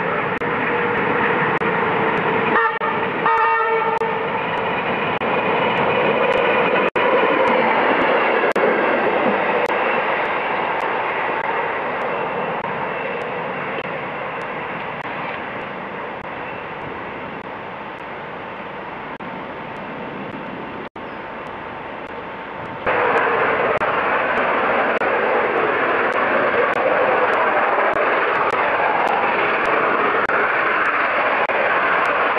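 Trains running past on camcorder sound. A diesel locomotive approaches with a held horn note and a short clatter of wheels, then a quieter, steady run. From about 23 seconds a much louder, even rushing noise comes as LNER A3 steam locomotive 4472 Flying Scotsman works past with a train.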